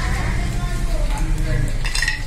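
Peanuts roasting in a pan on the stove, with light rattling and a few clicks near the end as more peanuts are dropped in from a steel plate, over a low steady hum.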